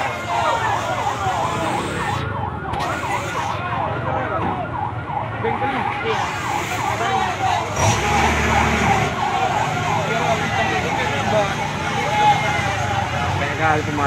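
Fire truck siren sounding a fast, repeated up-and-down wail, with people's voices around it.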